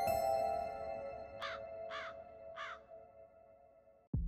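A bell-like chime chord struck at the start rings out and fades away over about three seconds. Through it a crow caws three times, about half a second apart, in the middle.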